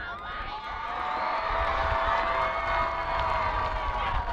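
Stadium crowd cheering and whooping, many voices overlapping and swelling about a second in, with a low wind rumble on the microphone.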